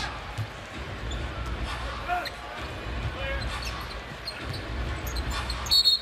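Basketball dribbled on a hardwood court, a run of low bounces, over a steady arena crowd murmur. A brief high squeak comes near the end.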